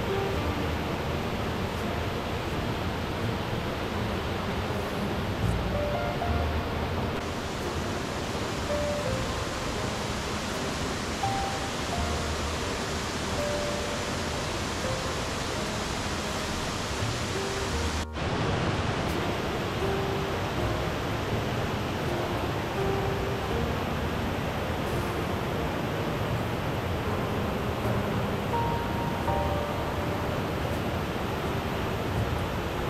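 Steady rushing of a waterfall as the creek spills over a wide rock ledge, with soft background music of held notes over it. The sound cuts out for an instant about eighteen seconds in.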